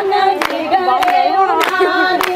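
Women's voices singing a Punjabi boli together in long held notes, with hand claps keeping time about every half second to accompany the giddha dance.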